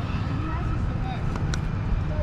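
Wind rumbling on the phone's microphone, with faint voices in the background.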